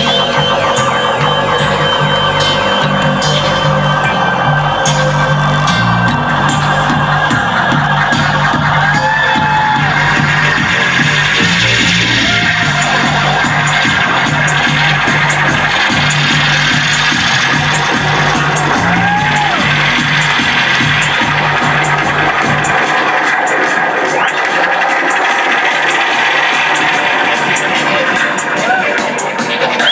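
Loud steppers-style dub reggae played live over a club sound system, with a heavy bassline that drops out about 23 seconds in, leaving the drums and upper parts running.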